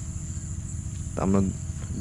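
Crickets chirring steadily in one continuous high-pitched note.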